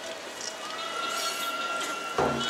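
Wind instruments holding long, steady reedy notes, one note bending slightly upward partway through, over the murmur of a large crowd. The sound is typical of the gagaku music that accompanies a shrine procession.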